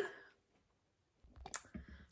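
Faint, sharp clicks and a few soft knocks in the second half, after about a second of near silence.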